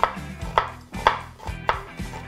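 Large kitchen knife chopping an onion on a plastic cutting board: four sharp cuts, each knocking the blade against the board, about half a second apart.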